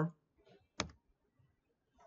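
A single sharp click of a computer keyboard key, the keystroke that deletes a selected line of code, with a fainter tick just before it.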